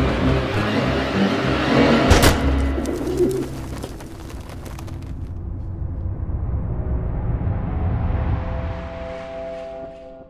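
Trailer soundtrack: a loud, dense din with a sharp bang about two seconds in, dying away by about four seconds, then a rising hiss with a few held notes that swells toward the end and cuts off.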